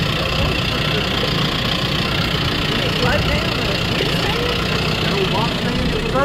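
Vehicle engine running steadily, a continuous low rumble heard from inside the cab.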